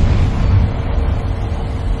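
A low, steady rumble with no music, heard outdoors beside a car.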